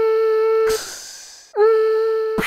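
Logo-intro sound effects: a held tone steady in pitch, with its overtones, breaks off about three-quarters of a second in for a hissing whoosh that fades away. The tone comes back about a second and a half in, sliding up onto its pitch.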